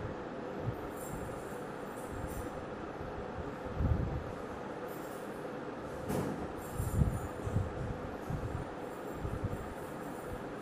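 Steady rumbling background noise with a constant hum, and a few low bumps from the phone being handled, around four seconds in and again between six and eight seconds.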